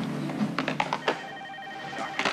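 Desk telephone ringing with an electronic trilling tone, starting about halfway in, after a few sharp clicks and taps.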